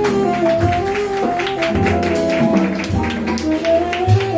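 Live small-group jazz: a tenor saxophone plays a moving melodic line over piano, upright bass and a drum kit with steady cymbal and drum strokes.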